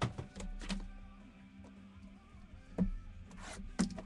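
A few sharp clicks and taps from handling trading cards and their packaging, the loudest about three seconds in and just before the end, over a faint steady hum.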